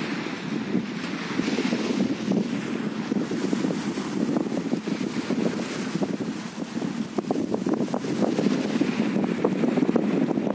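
Wind buffeting the microphone in a steady, crackling rumble, over small waves washing onto a sandy beach.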